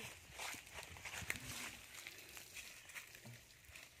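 Faint, irregular wet clicks and rustles of a newborn calf sucking at a plastic bottle held to its mouth.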